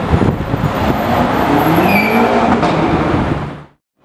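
BMW M5 CS's twin-turbo V8 accelerating away, its engine note rising in pitch under load. The sound cuts off abruptly near the end.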